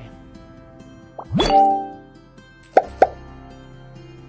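Animation sound effects over soft background music: a rising 'bloop' about a second and a half in, then two quick pops close together near the end, the pop of chat message bubbles appearing.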